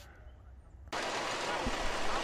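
Faint background for about a second, then a steady hiss of outdoor noise starts abruptly and holds.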